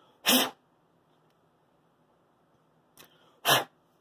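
A man's two short, sharp bursts of breath about three seconds apart, the first heard as a laugh.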